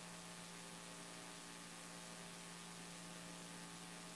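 Steady mains hum with a faint hiss, a low buzz with a row of overtones that holds unchanged throughout.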